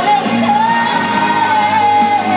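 Live band music with a singer holding one long note that slides down at the end, heard from the audience in a large hall.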